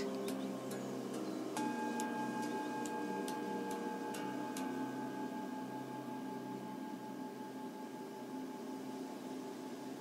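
Soft ambient meditation music: steady sustained drone tones, with a higher tone entering about a second and a half in and the whole slowly fading. Faint scattered ticks sound over the first few seconds.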